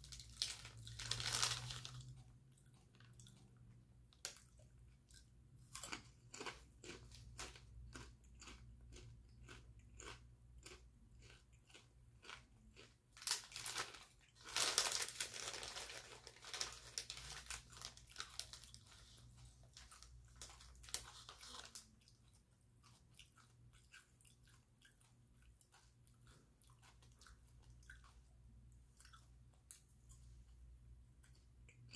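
A person chewing crisp potato chips: a run of sharp crunches about two a second, fading to softer chewing in the last third. A louder rustle of the chip bag comes near the start and again about halfway through.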